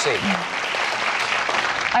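Studio audience applauding.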